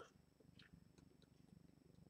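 Near silence: room tone with a faint low hum and a few faint ticks.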